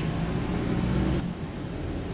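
Wright StreetLite DF single-deck bus under way, heard from inside the saloon: the engine pulls with a steady low note over road noise, then the engine note and noise drop back a little over a second in.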